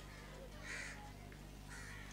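A crow cawing twice, faint and harsh, about half a second in and again near the end, over a low steady electrical hum.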